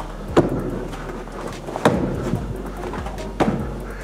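Three solid thuds about a second and a half apart: strikes landing on a column of stacked dense rubber discs used to condition shins and knuckles.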